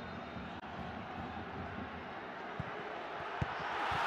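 Stadium crowd ambience: a steady, low murmur of the crowd in the stands, with a few soft low thuds in the last second and a half.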